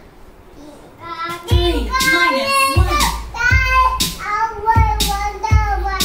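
A young child singing, with low thumps keeping a regular beat about every two-thirds of a second. The singing starts about a second in, after a quieter moment.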